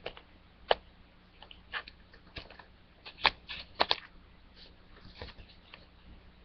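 Hands handling a DVD's plastic wrapping and cardboard casing: scattered short clicks and crinkles, irregularly spaced, with the sharpest ones around the middle.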